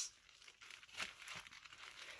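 Faint crinkling and rustling of plastic packaging as a wrapped stack of comic books is handled, starting about half a second in.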